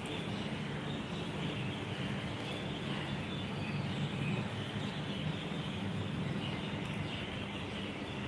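Steady background ambience: an even hum and hiss with no distinct events.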